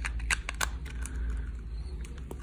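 Hard plastic shell of an Apple MagSafe power adapter being pressed and worked back onto its casing by hand: a string of small, irregular plastic clicks and rubbing.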